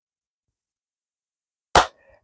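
Near silence, then a single sharp hand clap near the end.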